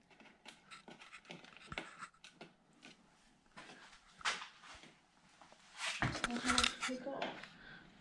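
Small crinkling clicks and scratches of a foil seal being picked and peeled off the mouth of a plastic engine-oil bottle, with the bottle being handled. A quiet voice is heard briefly about six seconds in.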